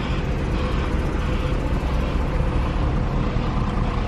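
Mercedes-Benz C63 AMG's V8 engine idling steadily.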